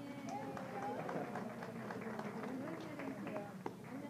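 Indistinct chatter of several people talking at once, with scattered light clicks and knocks.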